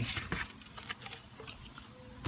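Faint, scattered light clicks and knocks of white PVC drain fittings, dry-fitted together, being picked up and turned by gloved hands.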